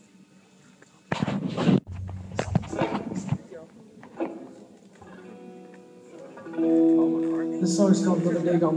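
Live amplified electric guitars: after a few short loud bursts of voice and noise, a guitar chord is struck about six and a half seconds in and rings out sustained, opening a song.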